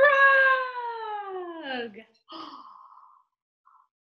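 A woman's voice making a long, drawn-out sound that falls steadily in pitch for about two seconds, followed by a shorter rasping sound, as a playful animal-noise imitation.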